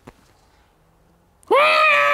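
A person's loud, high-pitched squeal, starting about a second and a half in after a quiet moment, held for over a second and dropping slightly in pitch at the end.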